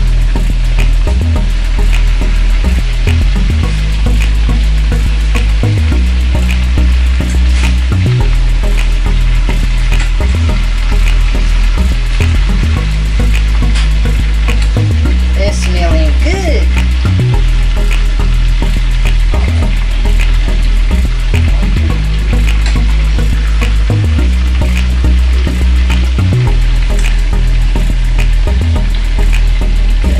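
Chicken pieces sizzling as they fry in oil in a stainless-steel skillet, with an occasional clink of a fork turning them against the pan. Under it runs music with a deep bass line that steps between notes every couple of seconds.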